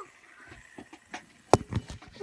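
Handheld recording phone being handled: a few faint clicks, then a quick cluster of knocks and thumps in the last half second.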